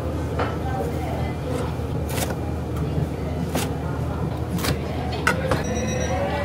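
A knife slicing through a crisp fried breaded pork cutlet on a cutting board, with about six sharp knocks at uneven intervals as the blade meets the board. A steady kitchen hum runs underneath.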